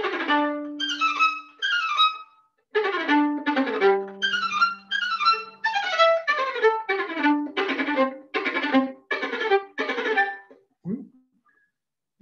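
Solo violin playing a run of short, detached notes with the bow bouncing on the string: a ricochet bowing demonstration, four staccato notes at a time on a down-bow. The playing stops about a second before the end.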